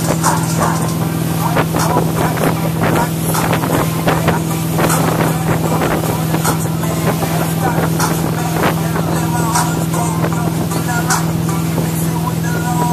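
Motorboat engine running at a steady drone while towing a wakeboarder, with rushing water from the wake and wind buffeting the microphone.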